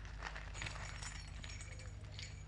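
Faint jingling and clinking of a bunch of car keys, a scattering of small metallic clicks, over a low steady hum in the recording.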